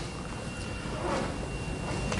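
Steady background room noise: a low hum with a faint, thin high tone over it, and no distinct events.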